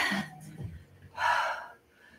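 A woman's short, forceful breath out, about a second in: the breath of effort during a resistance-band curl rep.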